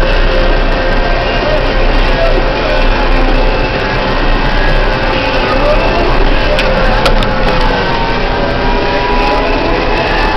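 Steady engine and road noise inside the cab of a large vehicle driving down a highway, with faint music playing along under it.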